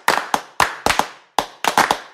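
Sharp hand claps in a quick, uneven rhythm with short decaying tails, the clap part of a stomp-style music track before its bass beat comes in.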